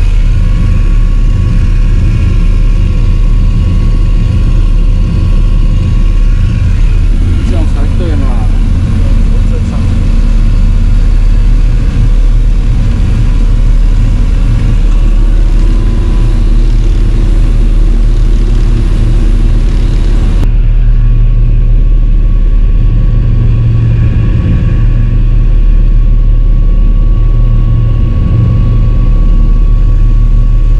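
A motor yacht's engines running flat out at about 30 knots, a loud, steady low drone with a rush of water and wind over it, heard from inside the wheelhouse. About two-thirds of the way through, the sound turns duller as its highest part drops away.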